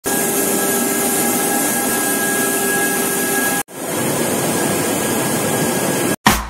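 Tea-processing machinery running, a loud steady mechanical noise with a faint high whine over it. It cuts out for an instant about three and a half seconds in, then resumes.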